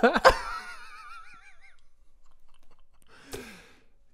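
Laughter after a joke: a loud burst at the start that turns into a high, wavering squeal of a laugh, trailing off after about a second and a half. A short breathy laugh comes a little after three seconds.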